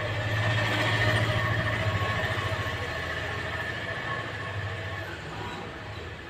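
A train running past, loudest about a second in and then slowly fading, with a low steady rumble and a faint high whine over it.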